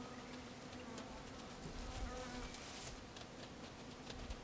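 Faint, steady buzzing of flying insects, a low hum that carries on without a break.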